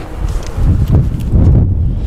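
Wind buffeting the microphone as a low rumble, with footsteps while walking.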